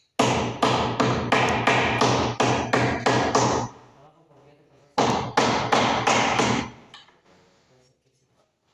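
Hammer blows on a wooden window frame: a quick run of about a dozen strikes, a pause of about a second, then about six more.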